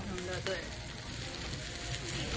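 Rice and vegetables sizzling in a hot Korean stone bowl (dolsot) of bibimbap, a steady hiss.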